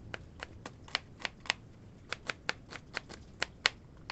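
Knife chopping red onion on a plastic cutting board: a run of sharp taps, about four a second, as the blade strikes the board with each cut. There is a short pause about halfway through.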